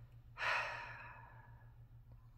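A person sighing: one long breath out starting about half a second in and fading away over about a second.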